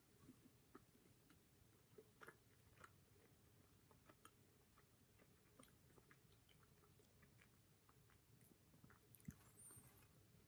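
Very faint chewing of a solid milk chocolate bar: a scatter of soft mouth clicks.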